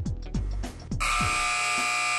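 Basketball shot-clock buzzer sounding one long steady buzz from about a second in, as the clock runs out at zero. Before it comes music with a few low drum hits that fall in pitch.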